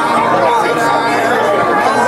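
Crowd chatter: several voices talking and calling out over one another at once, with no single clear speaker.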